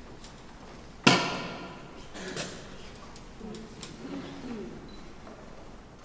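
A single loud, sharp knock about a second in, ringing on through a large reverberant church, followed by a softer knock and faint low murmuring voices.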